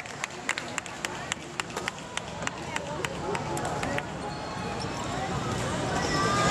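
Badminton hall ambience between rallies: general chatter with a quick, irregular run of sharp clicks and knocks, several a second, that thins out after about four seconds.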